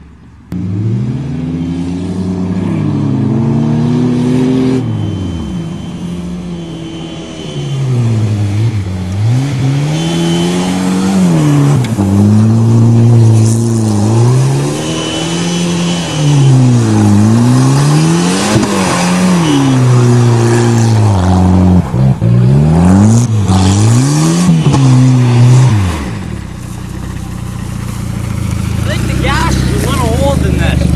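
Turbocharged Volvo 760's engine revving up and down over and over, about every two seconds, as the car spins through loose dirt. About 26 seconds in it settles to a steady idle.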